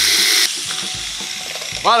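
Angle grinder with a cut-off disc cutting through a seized, rusted part of a VW T2 bus rear axle. It stops cutting about half a second in and winds down.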